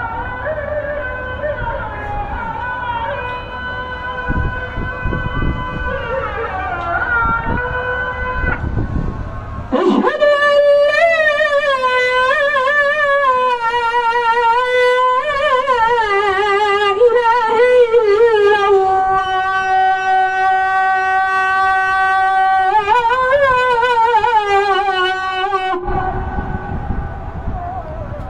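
A man singing a solo, unaccompanied melismatic chant into a microphone, holding long notes that waver and curl in pitch. Wind rumbles on the microphone for the first ten seconds and again near the end; about ten seconds in, the voice becomes louder and clearer.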